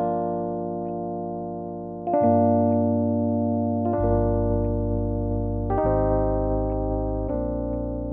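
Roland RD-88 digital stage piano playing slow held chords. A new chord is struck about every two seconds and left to ring, fading slowly until the next.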